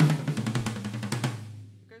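A fast drum roll played with sticks across the toms of a drum kit. A few final strokes fall on a lower-pitched tom, whose ring fades away over about a second.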